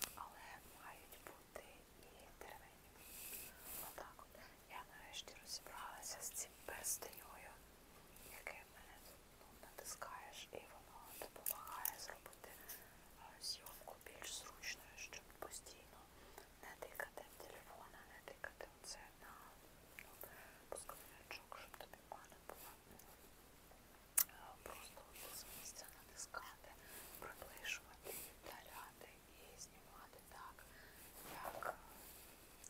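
A woman whispering in a chatty, continuous flow, with soft hissing consonants, and one sharp click about three-quarters of the way through.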